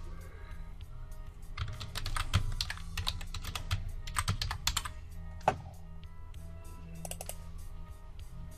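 Typing on a computer keyboard: runs of quick key clicks, with one louder single keystroke about five and a half seconds in.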